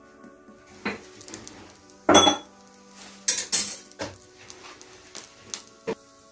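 Metal kitchenware clinking and knocking: a handful of separate strikes, the loudest a short clatter about two seconds in, with more knocks spread through the second half.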